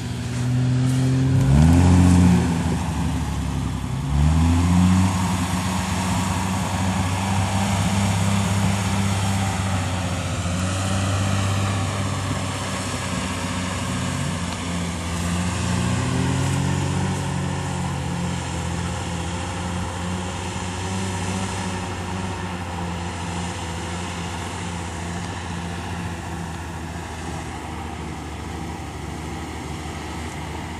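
Old flat-tray pickup's engine revving under load in sand, rising in pitch twice near the start, then running on steadily with another rise in pitch about halfway through, slowly growing quieter.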